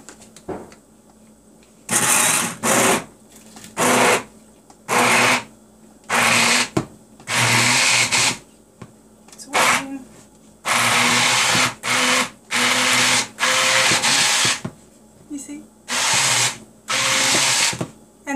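Electric immersion hand blender pureeing cooked pinto beans in their cooking liquid inside a plastic container. It is switched on and off in a series of short bursts of motor whine and churning, starting about two seconds in.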